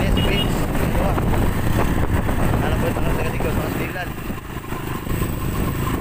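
Steady rumble of wind buffeting the microphone together with a vehicle engine running, recorded from a moving vehicle keeping pace with the cyclists. The rumble eases briefly past the middle.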